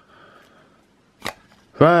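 A trading card being worked out of a tight clear plastic sleeve: a faint plastic rustle, then a sharp click a little over a second in as it comes free.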